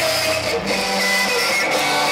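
Live rock band playing loud, distorted electric guitars, with several long held ringing tones over a dense wash of noise.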